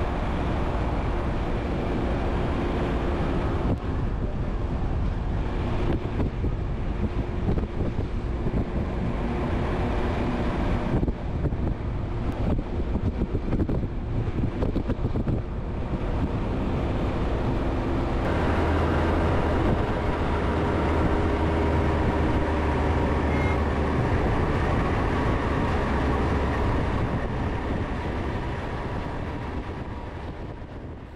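Car running on a climbing mountain road: steady engine hum mixed with tyre and road noise. A deeper rumble comes in a little past halfway, and the sound fades away just before the end.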